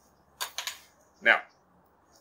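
Three quick dry clicks about half a second in, from broken disposable wooden chopstick pieces being handled and set down.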